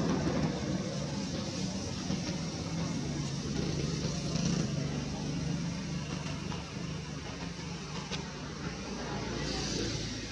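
Steady low engine hum of a motor vehicle over continuous background noise, a little stronger in the middle and easing toward the end.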